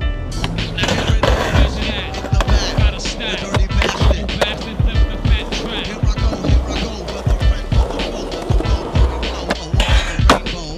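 Skateboard wheels rolling on concrete with many sharp pops and landings of the board, over music.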